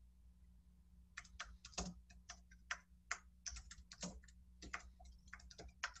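Faint typing on a computer keyboard: irregular key clicks, several a second, starting about a second in, over a low steady hum.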